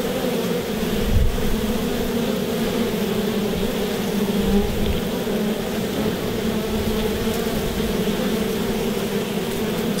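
Many honeybees buzzing together at a hive entrance in a steady, even hum.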